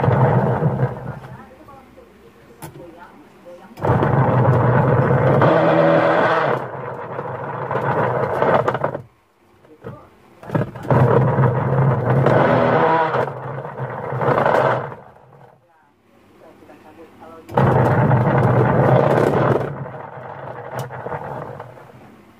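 Twin-tub washing machine's wash motor and pulsator drive running in repeated bursts of hum and mechanical noise that stop and start again as the wash cycle reverses. The pulsator turns weakly enough to be held by hand, which points to either a worn, wobbling gearbox or a worn drive belt.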